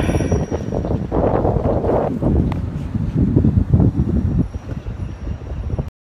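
Loud, uneven low rumble of wind buffeting and handling noise on a hand-held phone's microphone, cutting off suddenly near the end.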